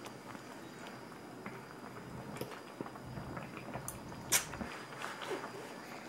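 Chopsticks clicking lightly against a pan of hot pot and the food in it, in scattered small taps, with one sharper click about four seconds in.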